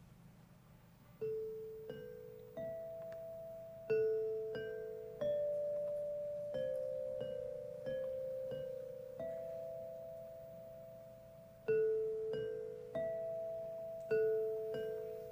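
A metallophone struck with mallets, playing a slow melody of single notes that ring on and overlap as each one fades. It starts about a second in, with a short pause in the middle.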